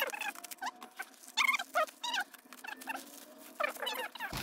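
Scissors cutting through a plastic mailer bag and the packaging being pulled open, heard as a few short rustling, squeaky bursts of plastic.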